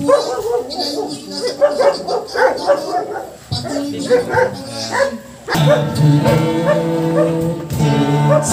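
Short, broken pitched calls for the first five seconds or so. About five and a half seconds in, guitar music starts and carries on steadily.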